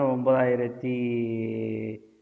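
A man's voice talking, then drawing out one long vowel at a steady pitch from just under a second in, as a hesitation while thinking. The held sound stops abruptly at the end.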